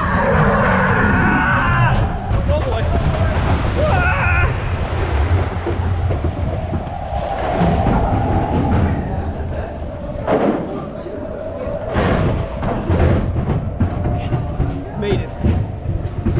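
Matterhorn Bobsleds roller coaster car running along its track: a heavy low rumble with rattles and a few sharp clunks, wind buffeting the microphone, and riders' voices calling out now and then.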